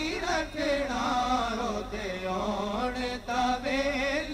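A group of men singing a Punjabi naat together into microphones, long melodic vocal lines bending up and down in pitch, with a short break a little after three seconds.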